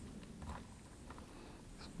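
Faint handling sounds over low room tone: a few light ticks and rustles as fingers turn the soldered wire leads and a plastic XT60 connector.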